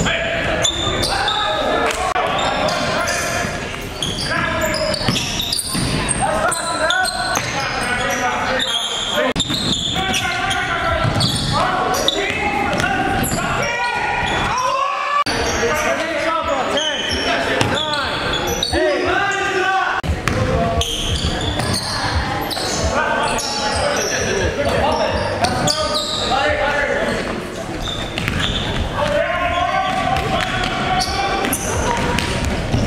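Basketball game sound in a large gym: a basketball bouncing repeatedly on the hardwood floor, with players' voices calling out throughout, echoing in the hall.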